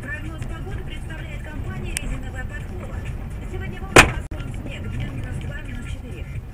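Car driving, heard from a dashcam inside the cabin: a steady low engine and road rumble, with one sharp, very loud knock about four seconds in.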